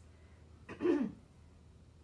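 A person clearing their throat once, about a second in, a short sound falling in pitch.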